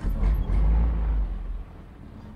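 Open military-style Jeep driving along a dirt forest track: a loud low rumble for about a second and a half, then quieter steady running.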